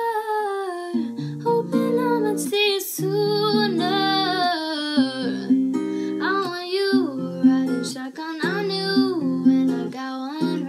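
Female voice singing a slow, gliding melody over acoustic guitar chords that change about once a second.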